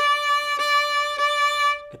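Fiddle playing a single bowed D note on the A string, stopped with the third finger, held at one steady pitch and re-bowed twice before it stops.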